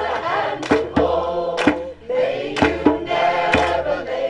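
Mixed choir singing sustained chords in harmony, with a hand drum (djembe) struck in a steady beat of about two or three strokes a second.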